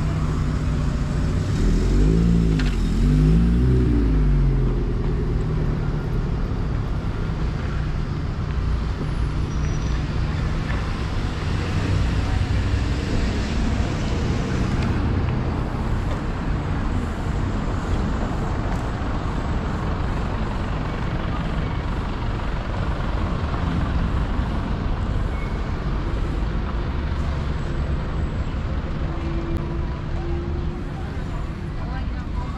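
Street traffic: a vehicle's engine passes close by a couple of seconds in, its pitch rising and falling, then a steady hum of cars on the road.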